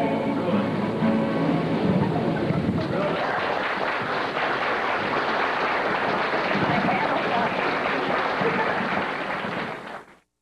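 Acoustic guitar and voices die away at the end of a song, and an audience applauds for several seconds. The sound cuts off suddenly near the end.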